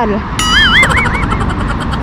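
A high-pitched warbling call from a passing wedding party, wavering up and down in pitch about four times a second, starts about half a second in and lasts about a second, over a steady rumble of road traffic.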